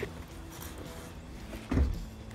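A single dull thump near the end, over a faint steady background.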